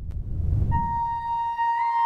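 Intro music: a low rumble swells up, then a single high melody note enters about two thirds of a second in and is held, stepping up in pitch near the end.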